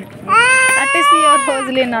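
A child's voice gives one long, high-pitched cry or call lasting about a second and a half, rising slightly in pitch and then falling away.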